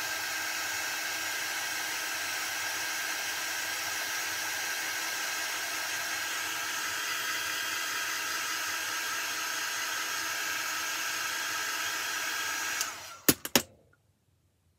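Handheld craft heat tool blowing steadily at a constant pitch, drying fresh paint on an egg. It switches off about a second before the end, followed by a few sharp clicks as it is put down.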